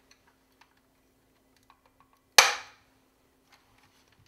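Plastic tail fin of a 1984 G.I. Joe Cobra Rattler toy being pressed into place: a few faint clicks of plastic being handled, then one sharp snap a little past halfway as the piece seats.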